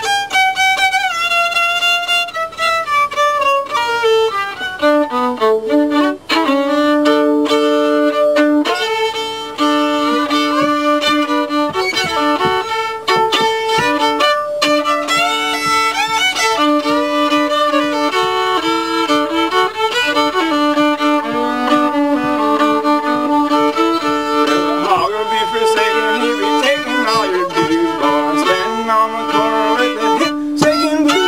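Solo fiddle playing a tune in D, bowed with long sustained double stops under the moving melody.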